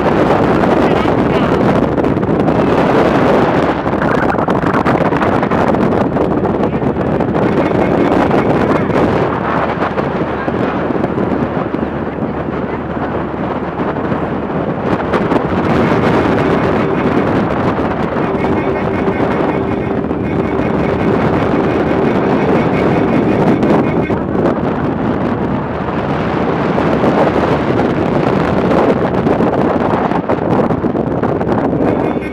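Wind buffeting a phone microphone while travelling in a vehicle along a road, mixed with the vehicle's running and road noise. A faint steady tone rides over the noise for several seconds past the middle.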